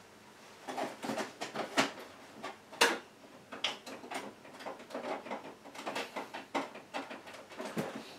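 Scattered light clicks, taps and rustling as a power lead is handled and plugged back into the back of an Epson inkjet printer, with a sharper click about three seconds in.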